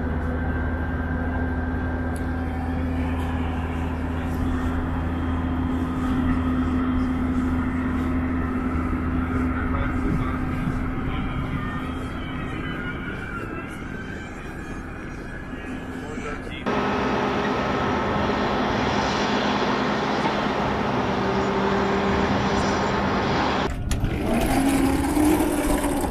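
Steady machinery hum with a low drone and a few steady tones. About two-thirds of the way through it cuts abruptly to a brighter, hissier hum, and near the end there are a few knocks.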